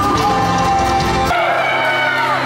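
Live worship band music with singing and acoustic guitar. Just over a second in it changes abruptly: the deep bass drops away, leaving softer sustained music under a woman's voice.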